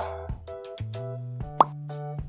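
Background music with a steady beat, and a single short, sharp pop sound effect about one and a half seconds in, marking the change of picture card.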